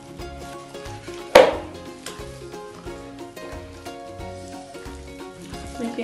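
Background music with a steady beat over the soft squelch of hands kneading raw beef mince in a plastic bowl. One sharp impact about a second and a half in is the loudest sound.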